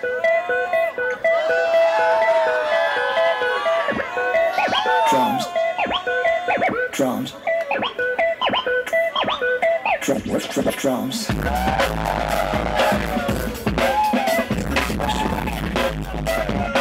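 DJ scratching records on turntables over a beat: short samples pushed back and forth by hand, swooping up and down in pitch, with sharp cuts between them. A heavy bass line comes in about eleven seconds in.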